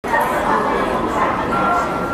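Many spectators shouting and cheering at once, a dense, steady wash of high-pitched voices, with a short steady tone near the end.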